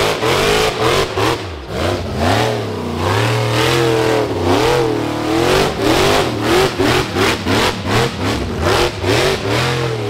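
Rock bouncer buggy's engine revving hard under load on a steep dirt hill climb. Its pitch swings up and down again and again as the throttle is worked, turning into choppy, stuttering bursts in the second half.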